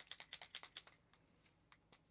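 Typing on a computer keyboard: a quick run of key clicks, about six a second, that stops about a second in.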